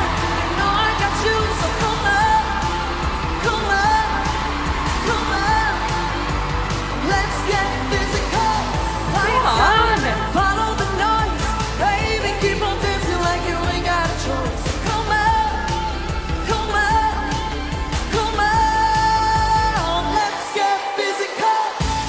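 Pop song with a female lead vocal singing over a steady bass and beat, from a live stage performance. The bass drops out near the end.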